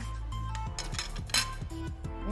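Background music, with one sharp clink of a metal spoon against a dish a little past halfway.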